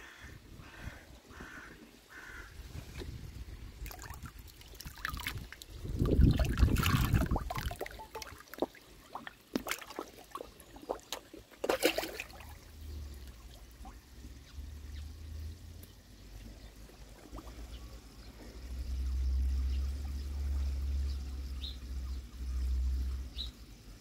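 Koi pond water splashing and trickling as sweetcorn is tipped in and koi feed at the surface, loudest a few seconds in. A low rumble comes and goes in the second half.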